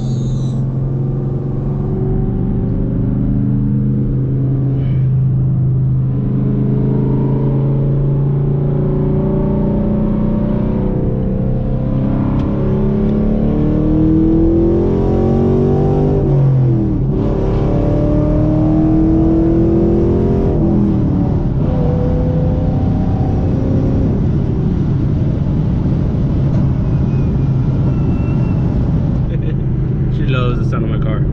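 Chevrolet Camaro engine breathing through Speed Engineering long-tube headers, heard from inside the cabin, pulling hard at part throttle. Its pitch climbs, drops at an upshift about halfway through, climbs again, then settles into a steady cruise.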